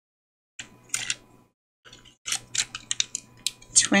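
Small round number tokens clicking and tapping against one another and the tabletop as a handful is gathered off a journal cover and set down. There are a few clicks about a second in, then a quick run of sharp clicks in the second half.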